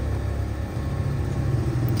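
A steady low rumble of a running engine, even in level throughout.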